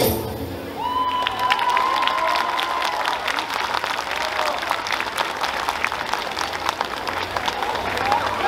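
Audience applauding after the music stops, with one voice cheering in a long high call early in the clapping.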